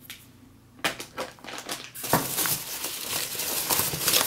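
Hands digging through polystyrene packing peanuts in a cardboard box: a few scattered knocks, then from about two seconds in a dense, continuous crackly rustle of the foam pieces rubbing and shifting.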